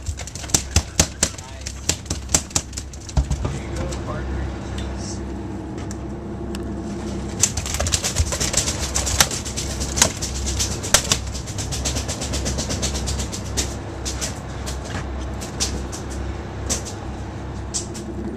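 A freshly caught tuna thrashing on the boat deck, its tail beating the deck in rapid, irregular knocks for the first three seconds. A second dense run of knocks comes in the middle, then scattered single knocks.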